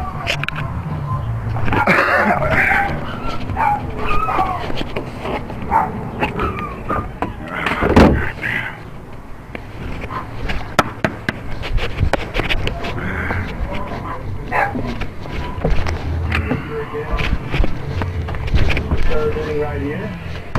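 Indistinct voices in a room, too unclear to make out, with scattered clicks and knocks and one louder sudden sound about eight seconds in.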